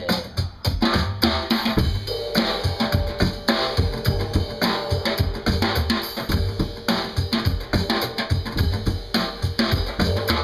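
Drum kit played with sticks: a busy groove of bass drum and snare hits. A held pitched note sounds under it from about two seconds in.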